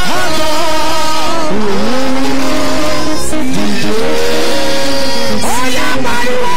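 A man singing loudly into a microphone through a heavily amplified sound system, holding long notes that slide up and down in pitch.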